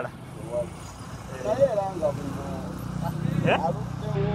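Scattered talking by nearby voices over a steady low engine drone, which grows somewhat louder near the end.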